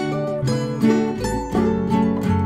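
Guitar in a lo-fi folk recording, chords plucked and strummed in a steady rhythm, about two to three a second.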